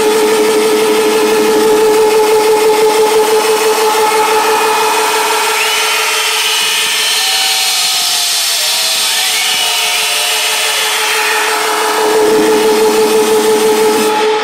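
Electronic dance music at club volume in a breakdown. The kick and bass drop out, leaving a held synth note that pulses rapidly, with sliding higher tones in the middle. The low end comes back near the end.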